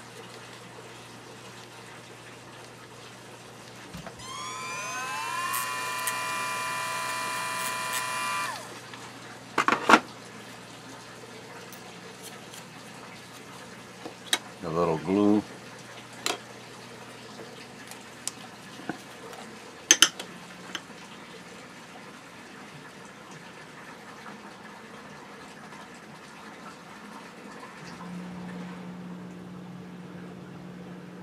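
Cordless Dremel rotary tool spinning up with a rising whine, running steadily for about four seconds and then stopping. A few sharp clicks follow.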